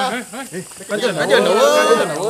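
Men's voices talking over one another in dialogue, busier and louder from about a second in, with no music underneath.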